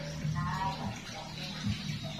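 A person's voice briefly in the background, over a steady hiss and a low hum.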